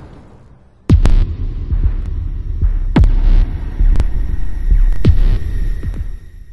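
Cinematic logo-intro sound effects: three deep hits, each sweeping sharply down in pitch, about two seconds apart, over a steady low throbbing rumble.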